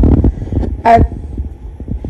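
A woman says a single hesitant "I" just before a second in, over low rumbling noise that is loudest at the very start.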